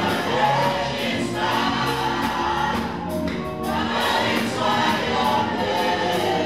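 Gospel worship song: a man singing lead with women backing singers, over band accompaniment with a steady percussive beat.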